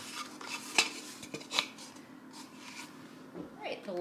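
Light clicks and knocks of hands handling craft items on a countertop as a wooden sign is moved and set down. The sharpest click comes just under a second in, with a few quieter ones after it.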